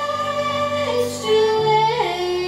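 A young girl singing over instrumental accompaniment: she holds a long note, then steps down to a lower held note about a second in.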